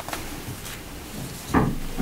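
Papers being handled on a wooden lectern close to the microphone: faint rustles and small clicks, then a soft knock about a second and a half in.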